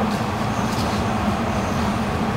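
A steady low hum runs at an even level throughout, with a few faint light ticks or swishes above it.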